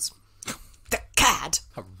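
A person clearing their throat: one short, rough burst a little past the middle, with a couple of faint clicks before it.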